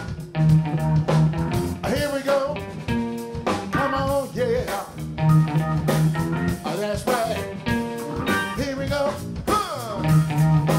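Live funk-blues band playing: a 1970s Hagstrom semi-hollow electric guitar plays bent, wavering lead notes over a drum kit and sustained low notes.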